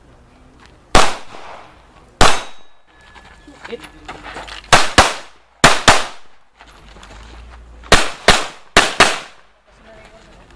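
Handgun fired ten times at an action-pistol match. The first two shots come singly about a second apart, then four quick double taps follow, each pair about a quarter to a third of a second apart, every shot trailing a short echo.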